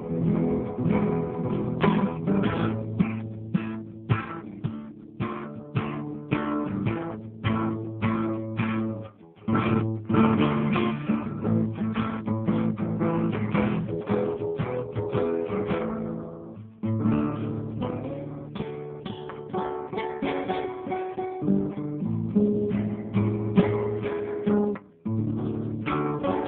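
Instrumental guitar music: plucked notes and chords played in a steady rhythm, with short breaks about nine, seventeen and twenty-five seconds in.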